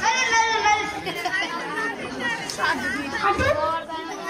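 Speech only: children's voices talking and chattering over one another.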